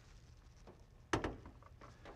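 A single sharp metallic knock about a second in, from the car's raised bonnet side panel being handled while the engine compartment is opened up, against quiet room tone.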